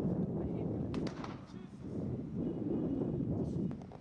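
Wind buffeting the microphone with a heavy low rumble, broken by a few sharp cracks about a second in and again near the end, typical of tear gas canisters being fired. The noise falls away just before the end.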